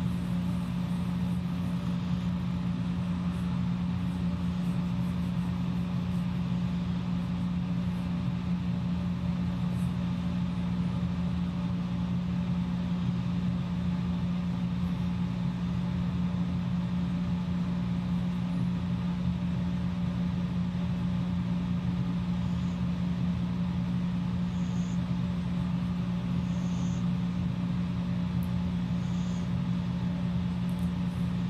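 A steady low machine hum at one pitch, like a motor or fan running.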